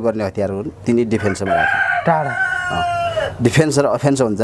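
A rooster crowing once: one long call of about two seconds that starts about a second and a half in and falls slightly at its end, with a man talking before and after it.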